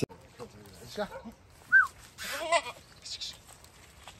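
Goats bleating: a few short calls about a second in, then a wavering, quavering bleat a little past the middle. A short, sharp high chirp just before it is the loudest sound.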